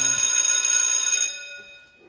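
School bell ringing, a loud, high ringing made of several steady tones that stops a little over a second in and dies away: the bell marking the end of the class period.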